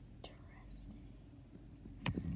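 Quiet room with a faint whisper and a soft click, over a low steady hum.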